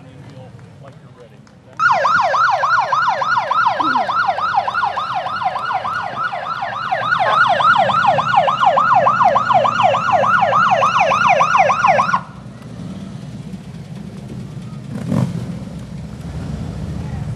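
Police electronic siren in rapid yelp mode, sweeping up and down about four times a second. It switches on suddenly about two seconds in and cuts off about ten seconds later, over a low vehicle rumble.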